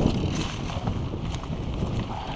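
Wind noise on the microphone of a mountain bike's handlebar camera while riding over leaf-covered dirt singletrack, with scattered light ticks and rattles from the bike.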